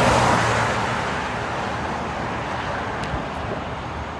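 Highway traffic: a vehicle passing close by with tyre and engine noise, loudest at the start and fading away over the next few seconds.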